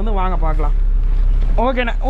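A man speaking, with a short pause near the middle, over a steady low hum.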